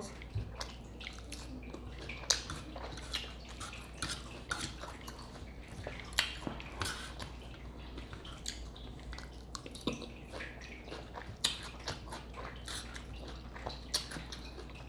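Close-miked eating sounds: wet chewing and lip-smacking on steak salad, an irregular stream of short clicks and smacks over a low steady hum.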